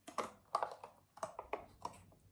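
A white silicone mold being flexed and peeled away from a set soy wax bubble candle: a quick run of short clicks and taps, about seven in two seconds, as the rubber pulls off and knocks against the wax.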